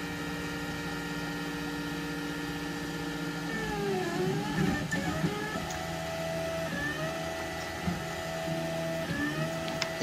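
XYZprinting da Vinci 1.0 3D printer's stepper motors whining as the extruder head traces the perimeter of the first layer. Steady tones shift and glide in pitch about three and a half seconds in as the head changes direction. In the second half a higher tone starts and stops several times with the moves.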